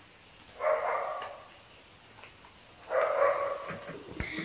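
An animal's call heard twice, each call drawn out for about a second, the second coming about two seconds after the first.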